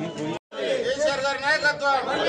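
Speech only: indistinct voices, cut off by a brief silent gap about half a second in, then a single loud voice.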